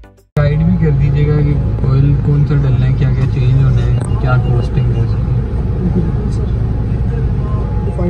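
A music clip cuts off abruptly just at the start. Then men talk through an open car window over a steady low rumble from the car.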